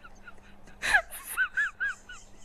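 A woman's helpless, high-pitched laughter: a string of short rising-and-falling squeals, broken about a second in by a sharp gasping breath, then more squeals. It is the laughter of being startled, which she cannot stop.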